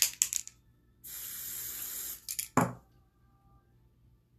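Spray foundation can sprayed onto a kabuki brush: a steady high hiss lasting about a second, between a few clicks from handling the can. About two and a half seconds in there is a louder knock.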